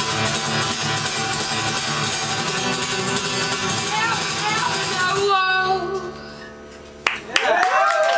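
Live rock band with acoustic guitar and vocals playing the final bars of a song. About five seconds in the band stops and a last chord rings and fades. Just before the end a sharp hit is followed by audience cheering and whooping.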